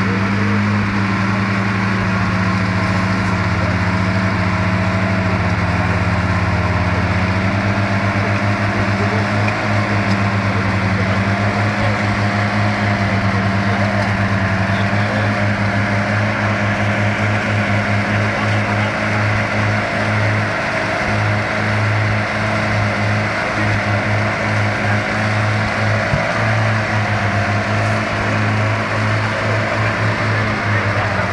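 Volvo Bv 202 tracked carrier's engine running steadily as the vehicle wades through deep mud and water, its pitch sagging and recovering slightly.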